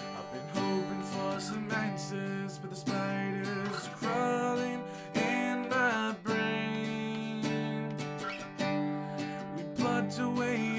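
A man singing over a strummed acoustic guitar, with the guitar chords struck in a steady run of strokes throughout.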